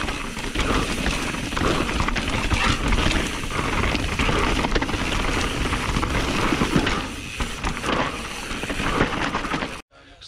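Radon Swoop 170 enduro mountain bike descending a rocky trail at race speed: a continuous rumble and clatter of tyres and bike over loose rock and gravel, heard from a camera on the rider. It cuts off suddenly near the end.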